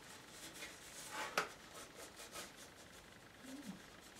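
Faint scratching of a pencil drawn across watercolour paper, sketching a long line, with a sharp tick about one and a half seconds in.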